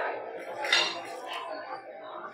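Restaurant dishes and cutlery clinking in the background, with one brief sharp clink a little under a second in and a fainter one later.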